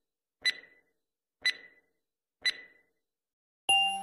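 Countdown-timer sound effect: three short, bright ticks one second apart. Just before the end, an intro music jingle starts loudly.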